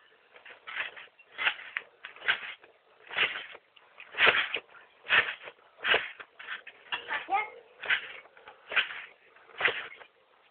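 Trampoline mat and springs giving a short swish with each bounce, steady at just under one bounce a second, as someone jumps and flips on it.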